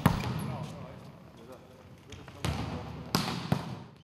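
Volleyballs being hit and bouncing on a wooden sports-hall floor during training, each smack trailing a hall echo: four sharp smacks, one at the start and three in the last second and a half.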